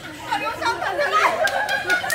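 A group of young people chattering over one another, with some laughter mixed in.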